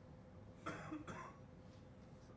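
A person coughing: a short double cough starting about two-thirds of a second in, with a faint steady hum behind it.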